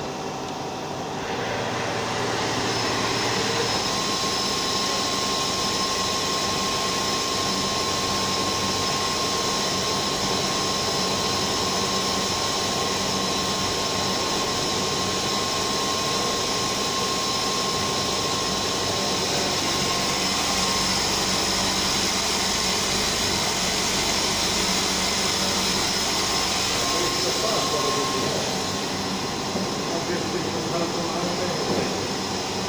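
CNC vertical milling machine's spindle running and its cutter milling a workpiece clamped in a vise: a steady machining noise with a faint high whine, coming up to full level about two seconds in.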